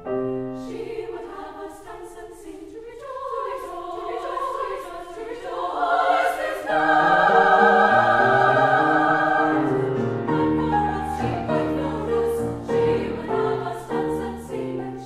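Women's choir singing with piano accompaniment, swelling to its loudest about seven seconds in, with low piano notes underneath in the later part.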